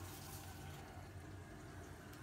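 Quiet room tone: a faint, steady low hum with no distinct sound events.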